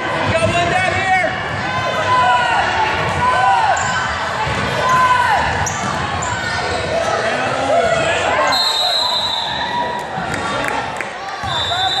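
Basketball dribbling and bouncing on a hardwood gym floor during play, with players and spectators shouting in the echoing gym. About two-thirds of the way through, a short high referee's whistle blows for a traveling call.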